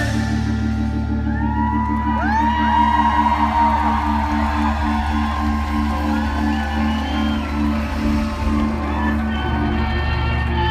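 Live band playing an instrumental passage without vocals: a steady low drone under a rapidly pulsing note, with audience whoops and whistles rising and falling over the top.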